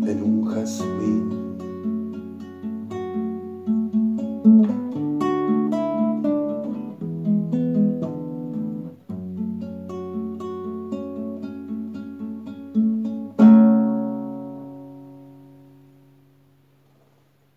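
Nylon-string classical guitar played by hand, a run of plucked notes over held bass notes, ending the song with a final chord about thirteen seconds in that rings out and fades away.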